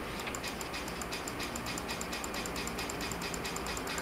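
Rapid, evenly spaced clicking, about seven clicks a second, from a computer mouse as pages of an on-screen document are turned.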